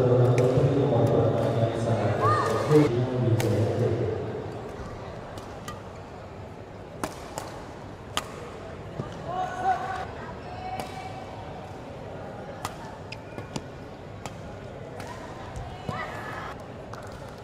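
Badminton rallies in an indoor hall: sharp racket strikes on the shuttlecock every second or two, with short shoe squeaks on the court floor. Voices run loudly over the first few seconds.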